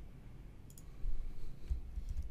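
A few scattered clicks from a computer keyboard and mouse: one sharp click a little before halfway, then several soft thumps of keystrokes.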